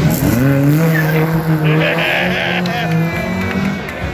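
A car engine revving up quickly, then held at steady high revs, with a short tyre squeal partway through.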